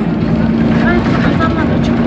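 Steady engine and road noise heard from inside a moving city bus, with a constant low hum.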